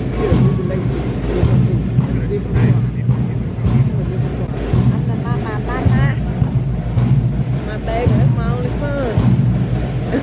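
Band music with drum beats accompanying a marching flag procession, with spectators' voices talking over it.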